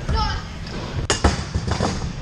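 Kick scooter riding in a skatepark bowl: a low rumble of rolling wheels, a sharp clack about a second in, then a few lighter knocks.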